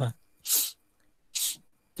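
Two short, hissing breath sounds from a man close to the microphone, about a second apart, like sharp sniffs or snorts.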